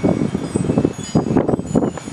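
Chimes ringing with steady, high sustained tones, over irregular rustling noise.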